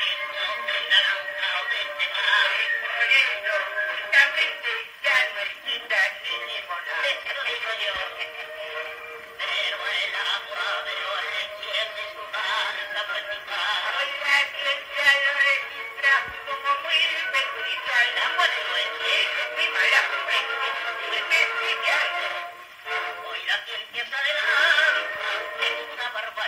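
Worn shellac 78 rpm record playing on a portable wind-up gramophone: two men singing a duet with orchestra, thin and boxy with no bass, under constant surface clicks and crackle. The wear turns the voices into a murmur in which the words are barely intelligible.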